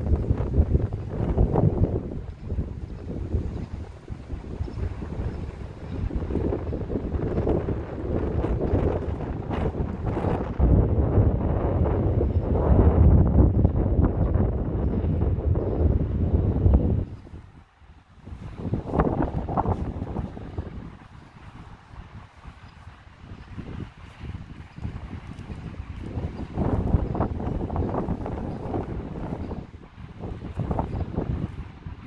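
Wind buffeting the microphone in gusts, a fluctuating low rush of noise that drops away briefly a little past the middle.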